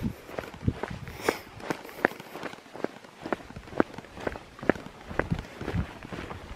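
Footsteps on bare rock slab, a steady walking pace of about two crisp steps a second.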